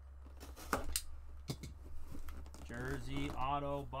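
Several short sharp clicks and taps in the first two seconds, then a man's voice speaking from about three seconds in.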